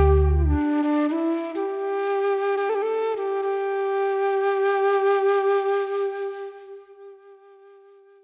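Solo flute ending a song. The backing drops out about half a second in, and the flute plays a short falling phrase, then holds one long note with vibrato that fades away near the end.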